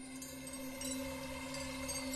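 Quiet sustained music: a held drone of steady tones with faint shimmering high notes, swelling slightly.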